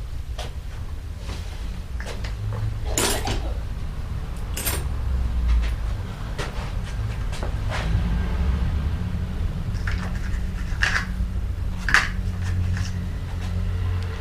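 Metal bicycle chain clinking and rattling as it is handled, a few separate short clatters over a steady low hum.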